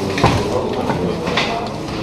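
Indistinct voices of people chatting in a room, with rustling and a couple of clicks.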